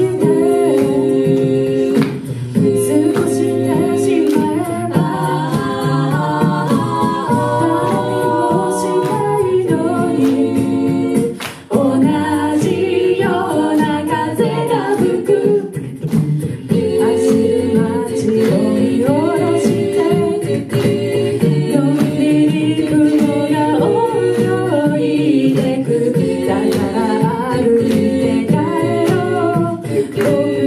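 Mixed-voice a cappella group singing a pop song in close harmony through a PA, with vocal percussion keeping a steady beat of short hits; the music drops out briefly about a third of the way in.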